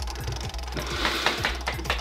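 Spin-the-wheel app on a tablet ticking rapidly as its wheel spins.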